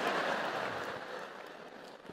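Audience laughing and applauding after a punchline, the crowd noise fading away over the two seconds.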